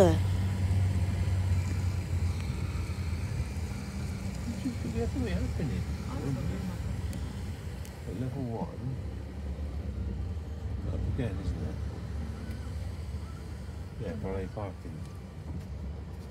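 Inside a car's cabin while it drives slowly round a multi-storey car park ramp: a steady low engine and road rumble.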